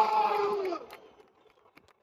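A man's long, held shout into a microphone, falling in pitch as it fades out just under a second in, then near silence.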